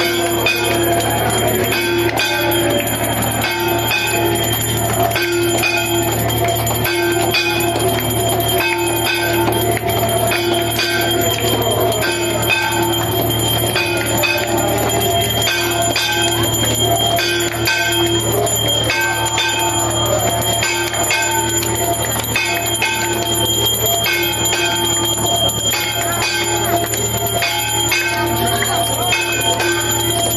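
Temple bells rung over and over in a steady, even rhythm as the aarti lamp is waved, the ringing accompanying the worship.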